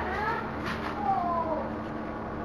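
An animal calling twice: a short call rising in pitch at the start, then a longer call falling in pitch about a second in.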